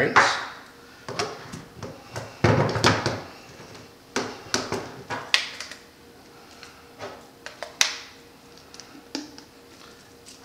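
Steel linear ball bearings and PVC pipe fittings clicking and knocking against each other and on a wooden table as the bearings are picked up and pushed into the slider base's elbows, a dozen or so scattered sharp knocks.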